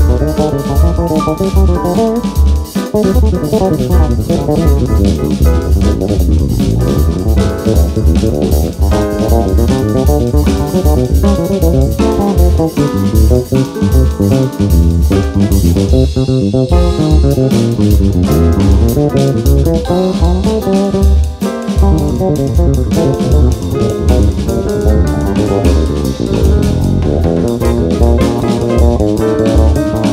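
Instrumental Brazilian jazz from a small group, with a busy bass line and a drum kit playing throughout.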